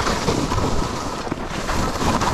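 Skis sliding and scraping over groomed snow while skiing downhill, with wind rushing over the microphone. The noise rises and falls unevenly rather than holding steady.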